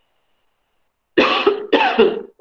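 A person coughing twice in quick succession, starting about a second in.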